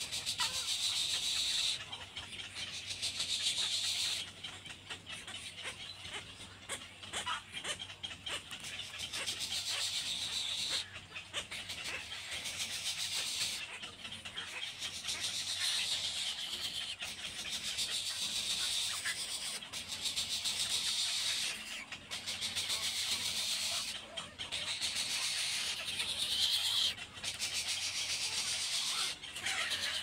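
Egret nestlings calling to be fed: a high, rapid chatter that comes in bouts of two or three seconds with short breaks between.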